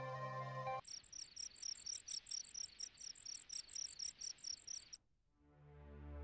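Background music breaks off under a second in. A cricket then chirps in a fast, even pulse of about five high chirps a second, which stops abruptly about a second before the end. Soft music then begins to swell in.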